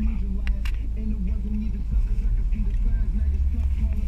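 Steady low rumble inside a car cabin, with two sharp clicks about half a second in.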